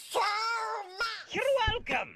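A voice actor doing Donald Duck's nasal, quacking voice: two long garbled duck-talk utterances that the speech recogniser could not make into words.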